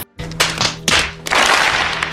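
Soundtrack of an inserted film clip: music with a few sharp thuds in the first second, then a dense rush of crowd noise from a large audience in the second half.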